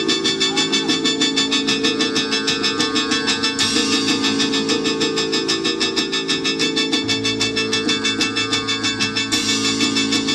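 Live band music: drums and percussion keep a fast, steady beat of about five strokes a second over held low chords. A brighter hiss joins about three and a half seconds in, and a deeper bass note comes in about seven seconds in.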